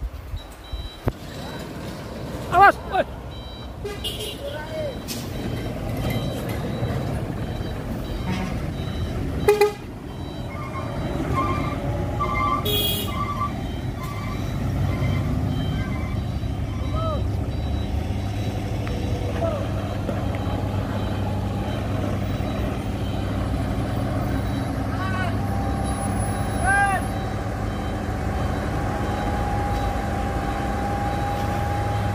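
A heavy tank truck's diesel engine rumbling low and steady as the truck slips back down a steep hill with weak brakes. Over it come several short toots or whistles, the loudest about three seconds in and again near ten seconds.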